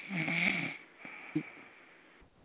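A person's brief wordless voice sound, under a second long, followed by a shorter one about a second later, over a faint steady hiss of the broadcast line.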